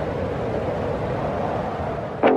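Steady rushing background noise at an even level, with no separate knocks or clicks.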